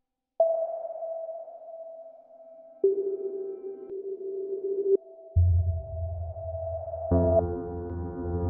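Ambient electronic synthesis from a Max/MSP patch: after a brief silence, a single held pure tone, joined about three seconds in by a lower held tone. Past the middle a low pulsing drone comes in, and near the end a fuller chord of many pitches enters over it.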